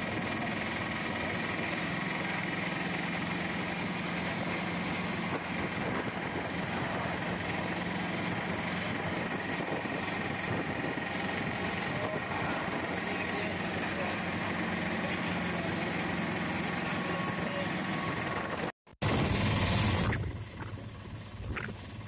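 Steady engine and road noise of a moving vehicle heard from on board, likely an auto-rickshaw. About three seconds before the end the sound cuts out for a moment, then there is a brief louder rush of wind noise followed by quieter running.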